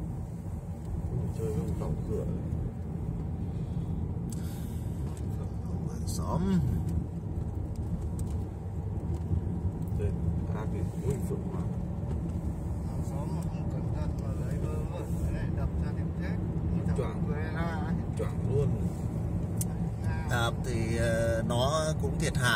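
Steady low rumble of a car's engine and tyres on the road, heard from inside the moving car's cabin. Faint voices talking come and go, with clearer speech near the end.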